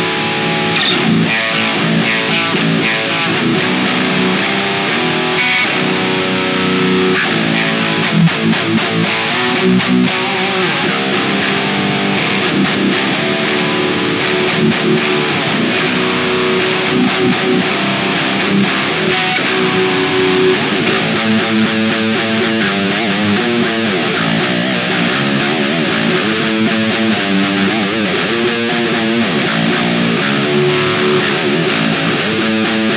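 Seven-string Jackson Pro Dinky HT7 electric guitar played steadily on its bridge pickup, a Fishman Fluence Open Core Classic in its first voicing.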